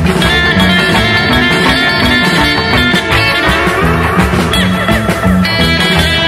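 Early-1960s instro-rock guitar instrumental: electric lead guitar over rhythm guitar, bass, organ and drums, with a steady beat.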